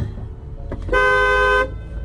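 A car horn honks once, a single steady blast of under a second, about a second in.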